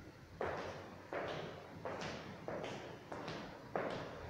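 Footsteps on a hard tiled floor: about six steps at walking pace, one every two-thirds of a second, each echoing briefly in an empty, unfurnished room.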